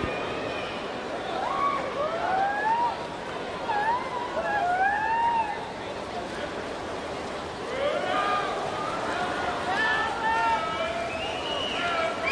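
Spectators cheering on swimmers in an indoor pool: single voices yell in long rising and falling calls over a steady wash of crowd noise, and the yelling thickens about eight seconds in.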